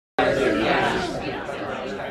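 Audience members talking among themselves in pairs: many overlapping conversations in a large hall, a dense chatter that cuts in suddenly out of dead silence just after the start.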